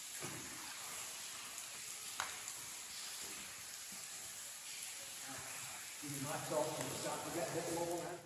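A steady hiss with one short click about two seconds in, and a faint voice over the last two seconds.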